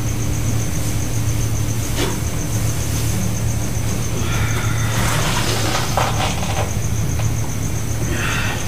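A steady low hum, like a running engine, with a thin, high, rapidly pulsing tone over it and a few faint clicks.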